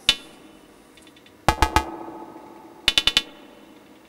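Percussive, metallic synthesizer hits from a Eurorack modular patch, their timbre made by a bipolar VCA (the Abstract Data Wave Boss) doing amplitude and ring modulation rather than by a filter. There is one hit at the start, a quick group of about three around a second and a half in, and a fast run of about five near three seconds, each ringing briefly with a pitched tone.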